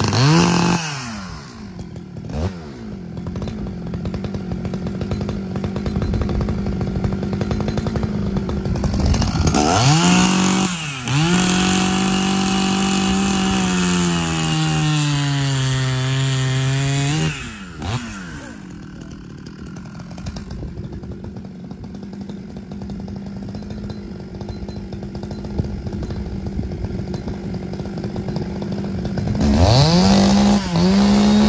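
Husqvarna 266XP two-stroke chainsaw with a 272 top end revved up, then held at full throttle through a log for about six seconds, its pitch sagging slowly under the load of the cut. It then drops suddenly back to a lower idle, and it revs up again right at the end.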